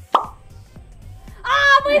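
A short, loud 'plop' sound effect just after the start, then, about a second and a half in, a woman's loud drawn-out 'ahh' of triumph at winning the card game, over background music with a low steady beat.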